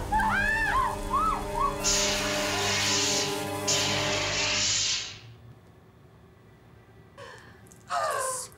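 Two long bursts of hissing spray putting out a fire, over a held music chord, after a few short gasping cries; the hiss stops about five seconds in and it goes quiet.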